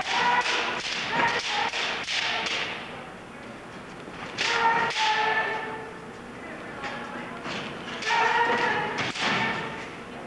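Kendo sparring: bamboo shinai knocking and clacking together in quick strikes, with loud drawn-out kiai shouts from the fighters in three bursts, at the start, about halfway and near the end.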